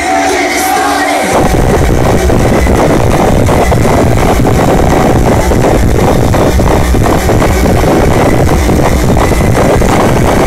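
Loud live band music from the stage PA, heard from within the crowd. For about the first second there is crowd noise with little bass, then the full band comes in with heavy low end and keeps playing.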